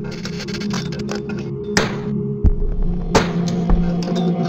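Background music: sustained low drone notes that shift pitch about three seconds in, with sharp percussive hits now and then.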